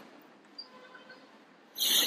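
Quiet room tone, broken near the end by a short, loud breathy hiss.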